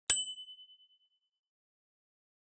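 A single bright ding, an edited-in bell-like sound effect struck once just as the segment titles light up, ringing with a high and a lower tone that fade out within about a second.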